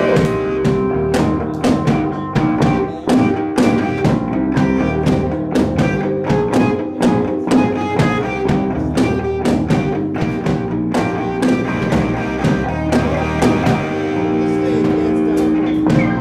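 Live band playing an instrumental passage: strummed acoustic guitar and electric guitars over a steady beat of drum hits on a small kit.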